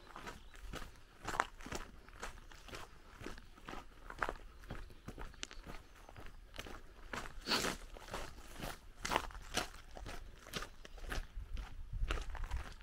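Footsteps crunching on a gravel lane at a steady walking pace, about two steps a second, with one louder step about halfway through.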